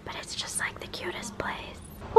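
A person's voice speaking softly, close to a whisper, much quieter than the talk either side.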